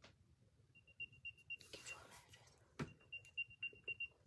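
Second-generation AirPods playing the Find My locating sound: faint, rapid high-pitched beeps, about seven a second, in two runs of six or seven beeps each. A sharp handling knock falls between the runs.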